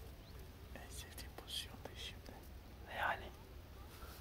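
A man whispering in a few short hushed bursts, the loudest about three seconds in.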